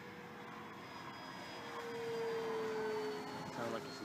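Electric motor and propeller of a 1700 mm FMS Corsair radio-controlled warbird flying a pass at full throttle: a steady whine that grows louder about halfway through and drops slightly in pitch as the plane goes by.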